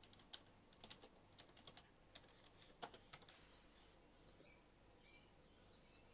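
Faint typing on a computer keyboard: irregular key clicks, thickest in the first three seconds or so, then sparser.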